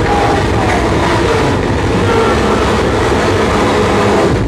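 Live harsh noise set through a club PA: a steady, loud wall of dense noise with faint wavering tones running through it.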